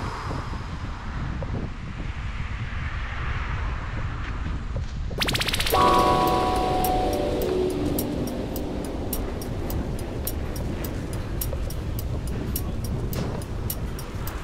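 Wind and rolling noise on the camera microphone while cycling, a steady low rumble. About five seconds in, a tonal squeal with several pitches starts and falls over a couple of seconds, followed by regular faint ticking.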